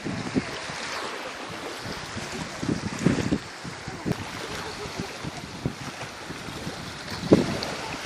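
Wind buffeting the microphone over the steady wash of small waves on the shore, with louder gusts about three seconds in and again near the end.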